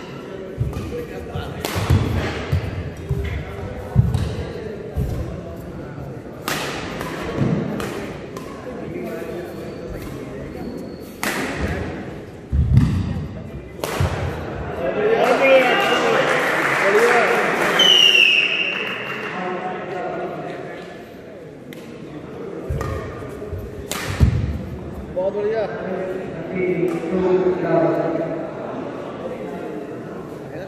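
Badminton rally on a wooden indoor court: sharp racket strikes on the shuttlecock and thudding footfalls, spaced irregularly a second or more apart. Spectators' voices swell around the middle.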